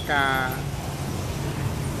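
A man's voice says a short syllable at the start, then pauses over a steady low rumble of road traffic.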